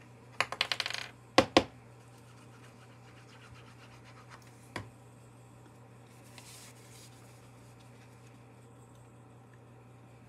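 A quick rattle of small hard objects, then two sharp knocks about a second and a half in and one more near halfway: craft supplies being handled and set down on a work table. After that only a faint steady hum.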